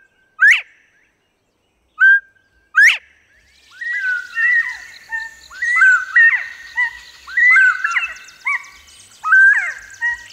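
Northern bobwhite whistling its two-note 'bob-WHITE' song twice, each a short level note followed by a sharp rising whistle. From about three and a half seconds a busier run of short, overlapping whistled bobwhite calls follows, with a faint high buzz behind it.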